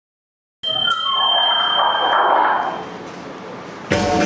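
A bell-like ding with a high, steady ringing tone over a wash of noise. It starts suddenly about half a second in and dies down after about two seconds, and music starts right at the end.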